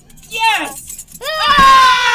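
A high-pitched human voice gives a short falling cry, then about a second in a long, loud held scream that sinks slightly in pitch, with a thump as the scream begins.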